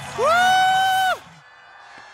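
A single high-pitched whoop of joy, held for about a second, rising at the start and falling away at its end.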